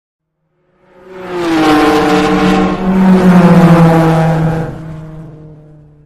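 Car engine sound effect: it swells in about a second in, runs loud with a slight drop in pitch partway through, then fades away near the end.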